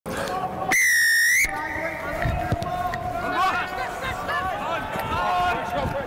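A referee's whistle blown once, a single loud steady blast of under a second, signalling the start of play. Players' voices shouting follow.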